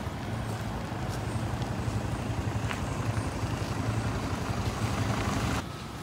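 A van's engine and tyres as it drives closer, growing slightly louder, then cutting off suddenly near the end.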